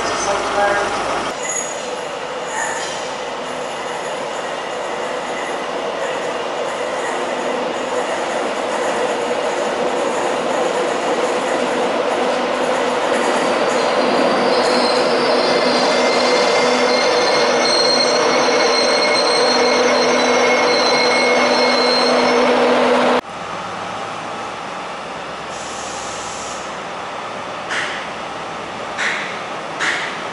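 Passenger train running into the station, its noise building steadily for about twenty seconds, with high-pitched wheel and brake squeal over the last several seconds as it slows. The sound cuts off abruptly near the end, leaving a quieter steady rumble.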